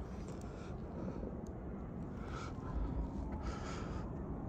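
Quiet outdoor background hiss with a couple of soft, short rustles of handling as a headlamp is taken off.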